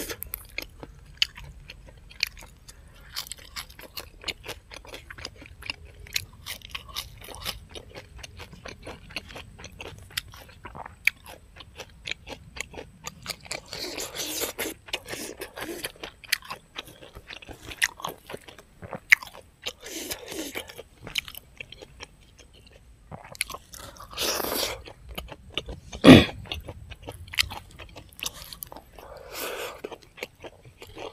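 A man chewing and crunching mouthfuls of food close to a clip-on microphone, starting with raw green leaves: a dense run of small wet clicks and crunches. One loud sharp crunch stands out a few seconds before the end.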